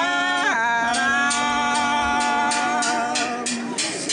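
Voices singing a slow Andean yaraví, holding one long note from about half a second in until near the end. A steady beat of sharp strokes, about three or four a second, comes in after about a second.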